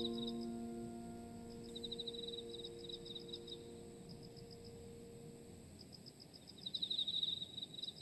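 The last piano chord fades slowly away, leaving crickets chirping faintly in short trills of rapid, high pulses that come and go several times.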